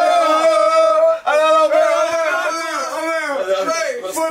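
Group of men yelling in celebration: one long, high held shout, then a run of short chanted cries about three a second.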